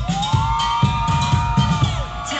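Loud dance-pop music played through a club sound system: a steady beat of about two thumps a second under one long held note that swoops up at the start and drops off near the end.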